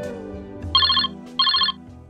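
A mobile phone ringtone sounds twice, each ring a short trill of high, rapid beeps, over the fading last chord of an acoustic guitar.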